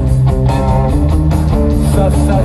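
Live rock band playing an instrumental passage between sung lines: electric guitar over bass and drums, heard through the arena PA from the crowd.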